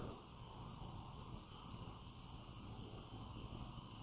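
Quiet room tone: a faint, steady low rumble and hiss with no distinct events.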